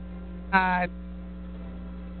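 Steady electrical mains hum in the audio feed. One short spoken syllable rises in pitch about half a second in.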